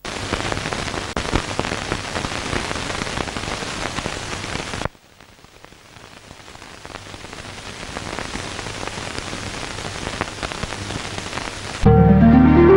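A dense crackling hiss like heavy rain. It cuts off sharply about five seconds in, then fades back up gradually, and stops suddenly as music starts at the very end.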